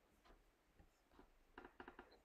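Near silence, with a few faint soft clicks from a latex-gloved hand kneading a moist lentil-and-bulgur köfte mixture in a glass bowl; the clicks come closer together near the end.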